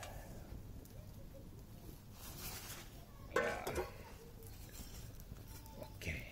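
Burning dry-grass and reed-flower tinder bundle crackling faintly, with a brief hissing flare about two seconds in. A little past the middle comes a short call of about half a second, the loudest sound.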